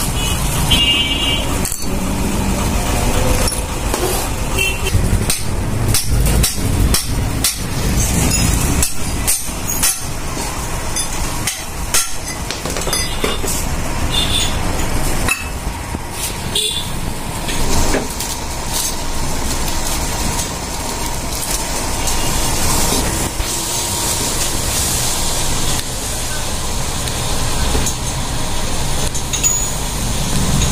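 Repeated sharp metal knocks and clinks from engine parts and a ball bearing being handled and fitted, most of them in the first half. They sit over a steady rumble of motor vehicles running nearby.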